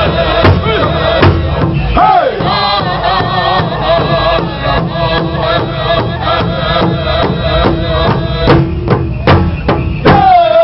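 Southern-style powwow drum group singing an intertribal song: several men's voices in unison over the steady beat of a large powwow drum struck together with beaters, a little over one beat a second. A couple of harder strokes come near the end.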